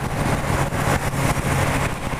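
Suzuki motorcycle's engine running at a steady cruise, a constant low hum, under a steady rush of wind noise on the microphone.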